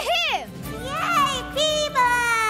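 High children's voices calling out in excited exclamations, two rising-and-falling calls, over background music.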